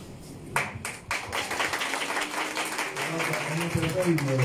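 A group of people clapping: a few claps about half a second in, then dense applause, with voices underneath.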